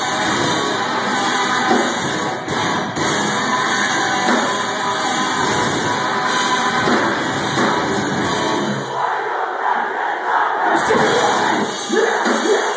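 Live metalcore band playing loud through a club PA: distorted guitars, drums and shouted vocals, with the crowd shouting along. The low end drops away for about two seconds near the end before the full band comes back in.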